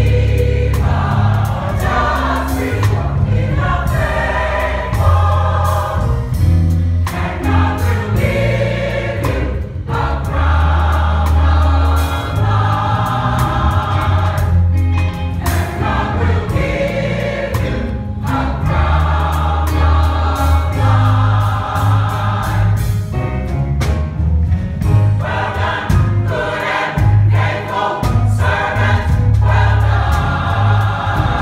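Gospel choir of men's and women's voices singing together, with a strong low bass line underneath that moves in held notes.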